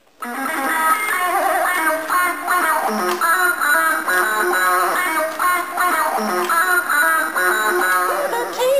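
Electronic toy guitar playing an electric-guitar riff that starts abruptly just after the beginning, a short melodic phrase repeating about every three seconds.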